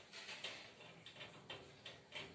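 Hermit crab's legs clicking faintly on a wire mesh lid as it climbs: a handful of light, irregular ticks.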